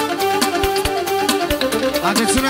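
Band music: an instrumental dance tune, a melody line over a regular drum beat.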